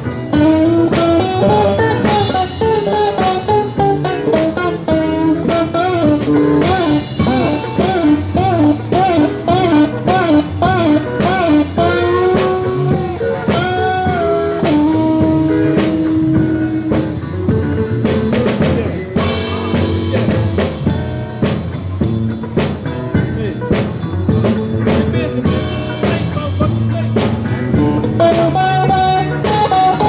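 Live blues band playing an instrumental passage: an electric guitar lead with notes that bend up and fall back, and a long held note about halfway through, over bass and a drum kit.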